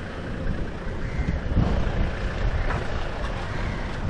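Wind buffeting the microphone of a handheld camera outdoors, an uneven low rumble.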